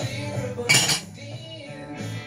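A short, sharp metallic clatter from the emptied aluminium beer can, about two-thirds of a second in, over rock music with singing.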